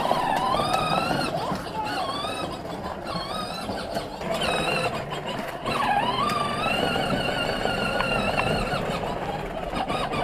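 Battery-powered John Deere ride-on toy tractor driving, its electric drive motor and gearbox whining steadily. The whine wavers in pitch as the tractor speeds up and slows, dipping sharply and climbing back about halfway through, over the rumble of plastic wheels rolling on concrete.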